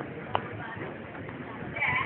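Steady background noise with one sharp click about a third of a second in, and a person's voice rising near the end.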